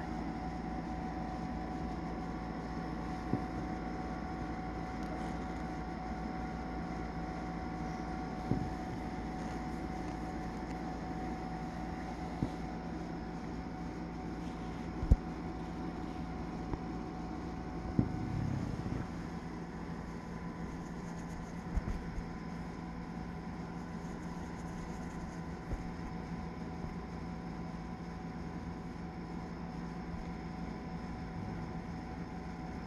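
Steady mechanical hum with several held tones, broken by a handful of short, sharp clicks scattered through it and a brief rustle about eighteen seconds in.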